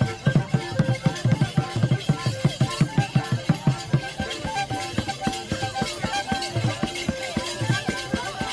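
Traditional drum music: quick, even drum beats, about five a second, under a melody of short held notes.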